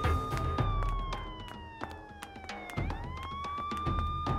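Police siren wailing: a held tone slowly falls in pitch, then sweeps quickly back up about three seconds in. Background music plays under it.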